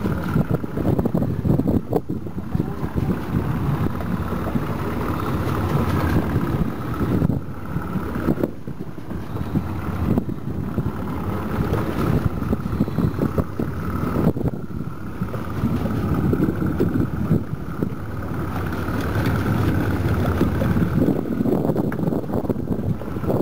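Wind buffeting the microphone aboard a small open fishing boat at sea: a loud, steady low rumble that surges and dips with the gusts.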